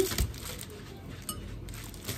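Faint handling sounds of a frozen pizza in plastic wrap being lowered onto a table, with a soft low thump just after the start and a few small clicks later, over quiet room tone.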